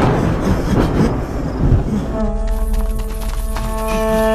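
Film soundtrack: a loud, noisy sound effect fading away over the first two seconds, then background score music comes in about halfway with a held chord of steady tones.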